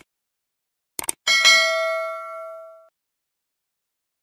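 Subscribe-button sound effect: a click at the start and two quick mouse clicks about a second in, then a bright notification-bell ding that rings out and fades over about a second and a half.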